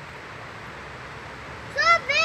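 Faint steady outdoor background hiss, then near the end a child's high-pitched voice breaks in with a short rising-and-falling call.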